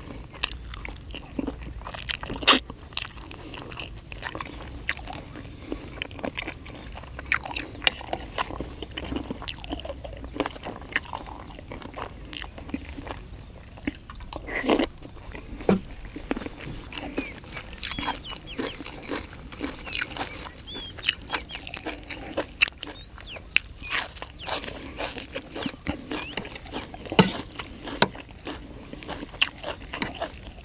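Close-up eating sounds: a man biting, gnawing and chewing a piece of chicken from green curry, with irregular sharp smacks and clicks of the mouth throughout.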